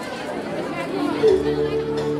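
Audience chatter, then about a second in the dance music starts over the loudspeakers with steady held notes.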